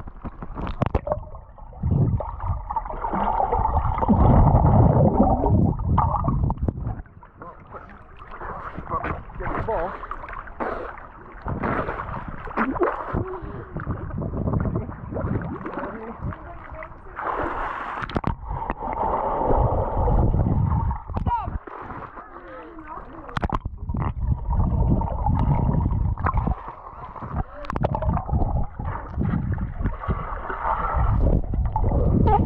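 Swimming-pool water sloshing, splashing and gurgling around a camera held at the water's surface.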